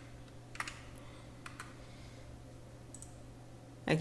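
A few scattered keystrokes on a computer keyboard, a handful of separate clicks spread over a few seconds, above a faint steady hum.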